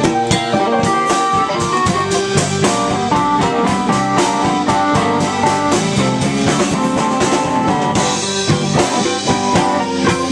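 Live blues band playing an instrumental passage: a mandolin picking lead lines over electric bass and a drum kit, with no singing.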